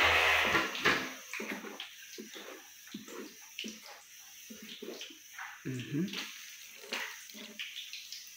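Wooden spoon stirring wet, blended bean batter for moi moi in a large bowl: irregular sloshing strokes, loudest in the first second.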